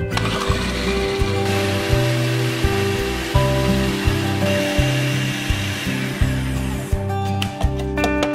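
Electric food processor running, its blade pureeing chopped tomatoes, starting about a second and a half in and stopping abruptly about seven seconds in. Background music with a plucked-string melody plays over it.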